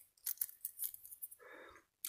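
Faint clicks and handling rustles of small side cutters picking at the tape wrapped on a lithium pouch cell, with a brief soft scrape about one and a half seconds in.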